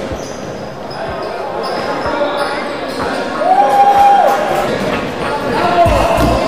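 A basketball bouncing on a hardwood court in an echoing gym, among players' voices.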